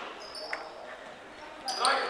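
Basketball gym sound between plays: a basketball bounces once on the hardwood floor about half a second in, over faint high squeaks, and voices pick up near the end.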